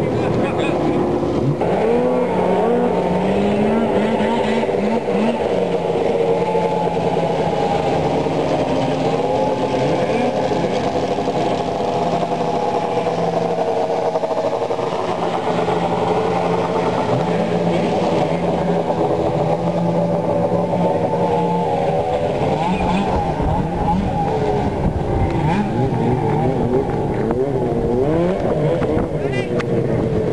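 Snowmobile engines running on the ice, their pitch rising and falling as they rev, with a deeper rumble building in the last third.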